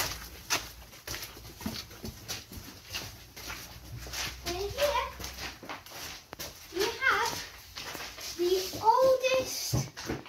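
Footsteps walking along a passage into a small stone chamber. Short vocal sounds with gliding pitch come about halfway through and again near the end.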